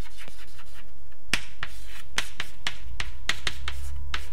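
Chalk writing on a blackboard: sharp taps and short scratches as each letter is struck and drawn. A few light taps at first, then a quick run of about a dozen taps from about a second in.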